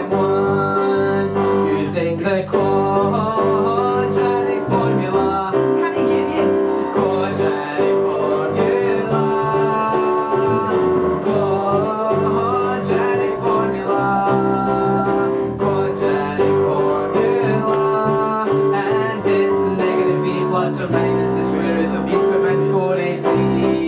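Live band music: a Yamaha electronic keyboard played with a piano sound, backed by bass guitar and acoustic guitar, playing steadily.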